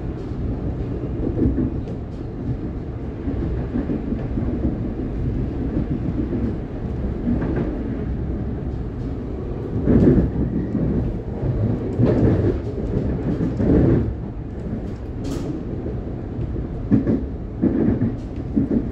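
Interior noise of a Siemens Nexas electric train running along the line: a steady low rumble of wheels on rail, with louder bursts of wheel clatter about ten, twelve and fourteen seconds in and again near the end.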